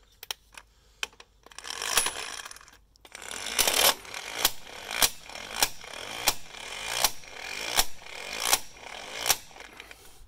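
12V cordless electric impact wrench with a deep socket tightening a wheel lug nut. A short whir as the nut runs down the stud, then several seconds of motor whirring with sharp metallic knocks about every 0.7 s as the tool hammers the nut tight.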